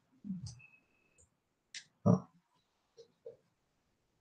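A few brief, faint grunt-like vocal noises from a person, the loudest about two seconds in, with a short high tone around the first second and a few small clicks in between.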